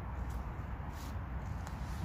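Faint brief rustles of jute twine being wrapped and pulled around a wooden pole, twice, over a steady low background rumble.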